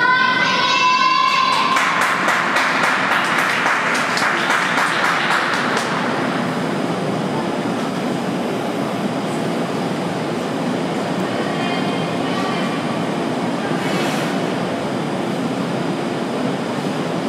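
A drawn-out cheering call from a spectator, then scattered applause that thins out over the first several seconds, leaving the rink hall's steady low rumble.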